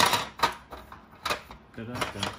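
Hard plastic pieces of a Sylvanian Families toy cottage knocking and clicking as the upstairs floor panel is fitted back into the house: a sharp knock at the start, then a few lighter clicks.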